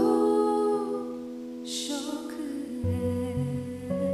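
A woman's voice singing long, wordless notes into a handheld microphone, with a breath taken about halfway through. Low accompaniment notes come in under the voice near the end.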